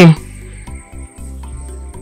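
Soft, sustained background film music in a pause between lines, with a steady thin high-pitched tone above it.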